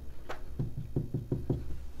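Marker pen knocking against a wall-mounted whiteboard while writing: a quick series of about eight light knocks, several a second.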